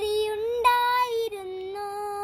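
A young boy singing a Malayalam poem in the traditional chanted style, with no accompaniment. He holds three long notes, stepping up and then back down.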